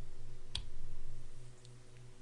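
A single short click about half a second in, over a low steady electrical hum.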